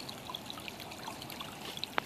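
Stream water trickling steadily, with a few faint clicks.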